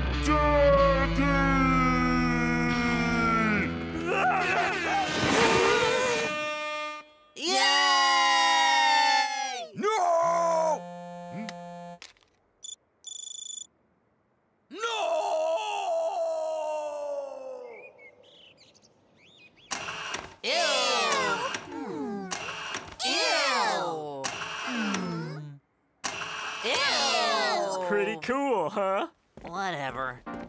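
Cartoon soundtrack: music at the start, then wordless character cries and groans. A short high electronic phone alert sounds about halfway through, and several voices groan together near the end.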